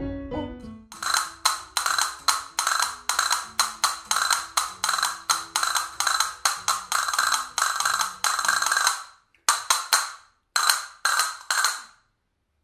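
Hand castanets playing a picado piece: a steady run of sharp clicks, several a second, over faint piano accompaniment. The run stops about nine seconds in, followed by a few short groups of strikes near the end.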